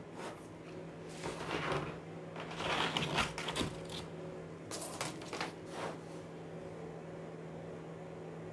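A clear plastic pattern ruler being slid across and set down on pattern paper, with paper rustling, in a few bursts over the first six seconds, then quieter handling. A steady low hum runs underneath.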